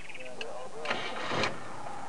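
Safari game-drive vehicle's engine running steadily, with faint indistinct voices.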